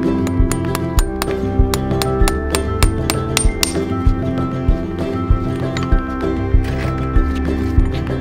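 Background music with a steady beat. Over it, a farrier's driving hammer taps horseshoe nails through a shoe and leather wedge pad into a hoof, a run of quick metallic clinks about four a second that thins out about halfway through.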